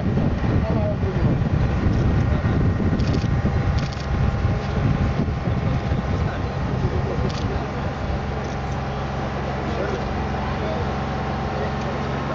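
Boom lift's engine running with a steady low drone. Wind rumbles on the microphone over the first half.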